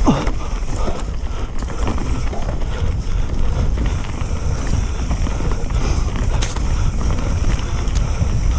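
Wind rushing over an action camera's microphone as a mountain bike is ridden fast along a dirt singletrack, with tyre rolling noise and occasional clicks and rattles from the bike. A short falling squeak right at the start.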